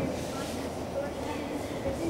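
Indistinct voices over a steady low rumble of room noise.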